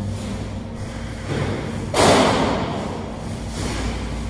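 A loud thud about halfway through that dies away over a second or so, over a steady low hum.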